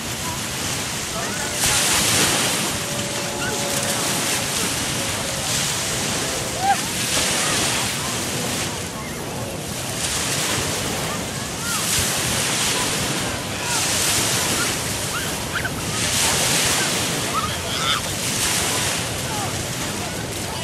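Small waves breaking and washing up a sandy beach, the surf swelling every couple of seconds, with wind buffeting the microphone.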